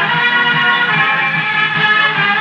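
Orchestra playing from a 1940s radio broadcast recording: sustained melodic lines over a steady low beat about four times a second.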